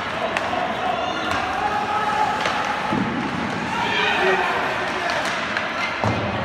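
Indoor ice hockey game from the stands: indistinct voices and shouts echoing around the rink, with several sharp clacks from sticks and puck during play.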